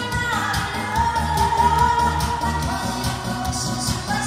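A woman singing a Korean song into a microphone through a PA over a backing track with a steady bass beat, holding one long note in the first half.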